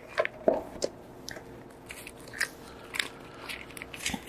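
Thin Bible pages being turned, a string of short paper rustles and crackles, the loudest about half a second in.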